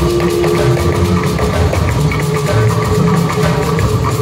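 Loud, steady gospel band music with guitar and a heavy, rhythmic bass and drum beat.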